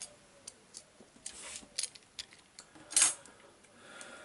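Handling of charger-cable wires and a utility knife on a wooden desk: scattered small clicks and ticks, a brief scrape, and one louder sharp knock about three seconds in as a tool is set down.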